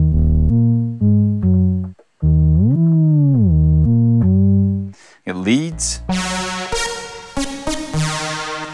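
Shaper iOS software synthesizer playing its 'Solid' bass preset: a run of short, loud, deep bass notes, with one note gliding up in pitch and back down in the middle. About five seconds in, a brighter, buzzier lead stab sound with reverb tails takes over.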